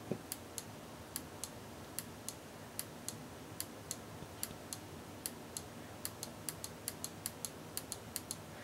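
Small handheld pushbutton switch pressed over and over, each press and release giving a sharp click, so the clicks come in close pairs. The presses come about one a second at first and quicken near the end. Each press steps a four-bit binary counter on an FPGA board.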